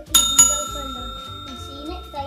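Bell 'ding' sound effect of a subscribe-and-notification-bell animation, struck twice in quick succession and ringing on for over a second as it fades.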